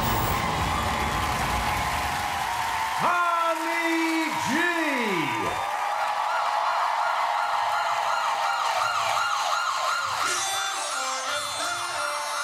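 Siren sound effect opening a hip-hop backing track: about three seconds of crowd noise, then a few falling electronic swoops, then a fast-warbling siren wail. Low bass notes come in near the end.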